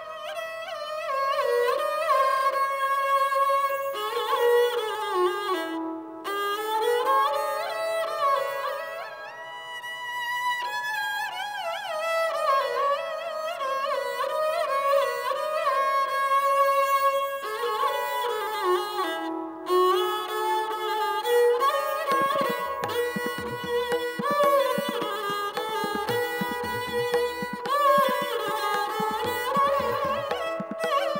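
A sarangi played solo with the bow, giving a traditional Rajasthani folk melody in long, voice-like lines that slide between notes. In the last third the bowing takes on a quicker, rhythmic pulse.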